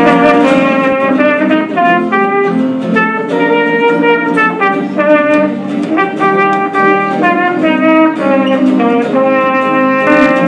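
Trumpet playing a melody in separate held notes, with acoustic guitar strumming chords underneath.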